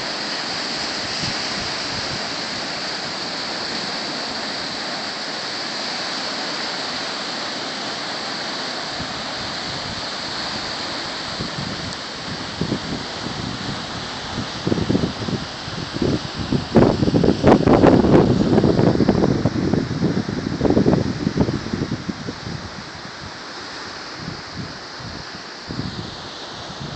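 Wind-driven surf breaking on a rocky shore, a steady rush of water. About halfway through, strong gusts of wind hit the microphone in loud, irregular rumbling blasts for several seconds, then ease back to a quieter rush.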